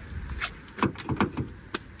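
A car door handle pulled and snapping back, giving a few sharp plastic clacks while the door stays shut: the car is locked.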